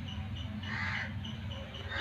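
A bird calling faintly, one harsh call about a second in, over a low steady hum.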